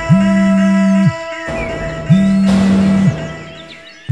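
Background music: a loud low note, held for about a second with a quick swoop in and out, sounds twice over a sustained higher drone, with a brief rising swell of noise between the two notes.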